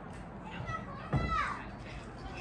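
Children's voices in the background, with one high-pitched child's call about a second in.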